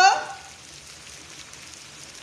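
Steaks sizzling steadily on a stovetop griddle, a faint even frying hiss. The end of a woman's drawn-out call fades out in the first half second.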